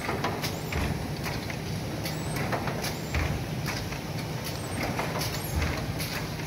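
Automatic bread-panning line running: a steady low machine hum with frequent irregular metallic clicks and knocks.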